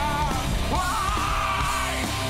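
Live metal band playing loud, with electric guitars and drums, while the lead singer yells a note that slides upward about a third of the way in and is held nearly to the end.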